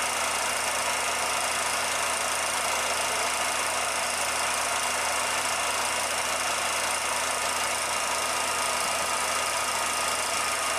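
16mm film projector running, a steady mechanical whir with a constant hum that does not change.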